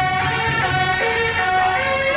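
A procession band's trumpets playing a melody in long held notes that step from pitch to pitch.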